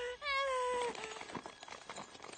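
A unicorn's horse-like whinny, one call that quivers at first and then holds a slowly falling tone for about a second, followed by a few faint clicks.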